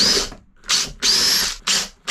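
Cordless drill driving screws into a wooden board, run in four short trigger bursts. Each burst spins up with a rising whine and holds briefly before stopping.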